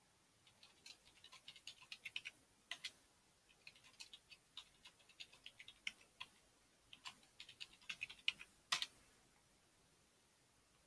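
Computer keyboard typing, faint, in several runs of quick keystrokes with short pauses between them, one louder keystroke near the end.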